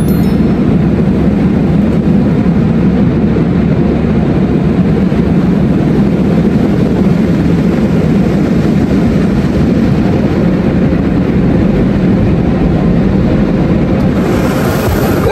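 Automatic car wash machinery running, heard from inside the car as a loud, steady, low rumbling noise.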